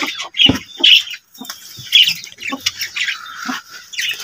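A few short bird squawks, mixed with knocks and scrapes of a wooden board being lifted off a nest box.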